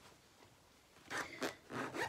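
Quiet at first, then from about a second in a few short rustling, scraping bursts as a small fabric project bag is picked up and handled.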